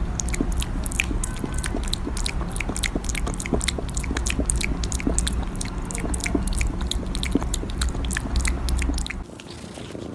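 A kitten licking and smacking at a squeeze-tube cat treat: rapid wet clicks of tongue and mouth over a low rumble. About nine seconds in, the sound drops to quieter chewing from another kitten.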